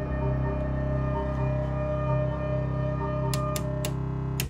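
Buchla 200 modular synthesizer patch playing a layered, sustained drone: a low tone pulsing steadily under short, repeating higher notes. Three sharp clicks sound near the end.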